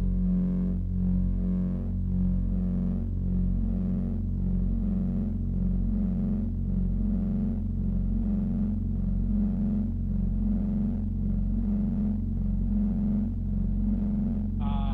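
Live synthesizer music played on keyboards: a steady deep drone under a repeating pulsing bass pattern with layered pitched tones above.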